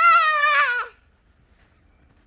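A small child's high-pitched, drawn-out 'aah' cry, held for just under a second.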